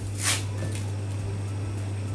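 A steady low hum, with a brief soft hissing noise about a quarter of a second in.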